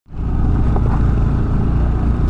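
Motorcycle engine running steadily under way on a dirt road, a loud even low drone mixed with wind and road rumble.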